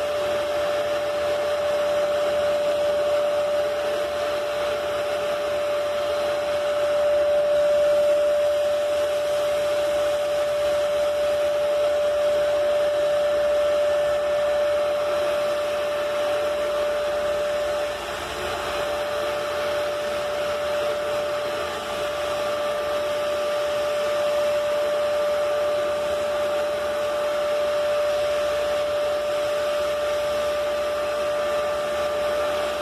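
Electric paint sprayer running steadily, its hose-fed turbine blowing air to the spray gun as paint is sprayed, with a constant whine.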